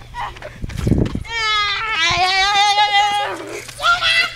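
A child's voice held in one long, wavering high cry lasting about two seconds, starting just after a second in, with a short low rumble just before it.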